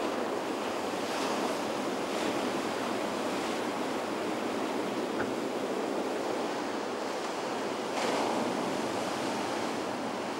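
Rough sea surf, waves rolling in and breaking around the pier pilings in a steady wash. Several louder surges rise out of it, the strongest near the end.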